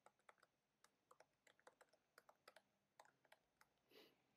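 Faint typing on a computer keyboard: a quick, irregular run of light keystroke clicks as a line of code is typed.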